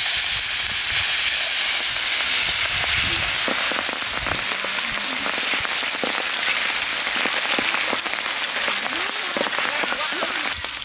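Hot oil sizzling and crackling loudly as two big black carp, just laid in, fry on a wide flat pan, with a dense spatter of small pops.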